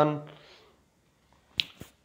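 A man's speaking voice trails off, then after a short pause two short sharp clicks come about a fifth of a second apart near the end.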